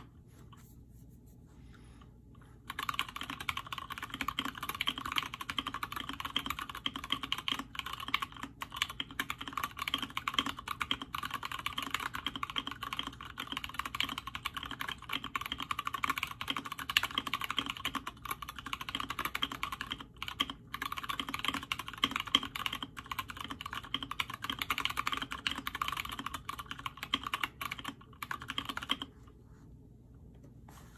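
Fast, continuous typing on an Alice-layout split mechanical keyboard with lubed, filmed, retooled Cherry MX Brown switches and SA-profile keycaps in a frosted acrylic case. The typing starts about three seconds in and stops about a second before the end.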